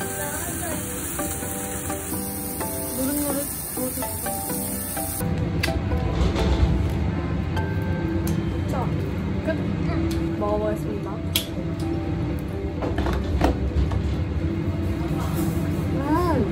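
Slices of beef tongue sizzling on a tabletop yakiniku grill under light background music; about five seconds in the sizzle cuts off, leaving restaurant room sound with soft voices and a few light clicks.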